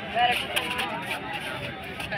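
Several people's voices outdoors, short calls and chatter from players and onlookers around a kabaddi court. A few brief clicks come through as well.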